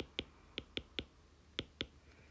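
A stylus clicking on a tablet's glass screen as words are handwritten: about seven short, sharp taps in small groups.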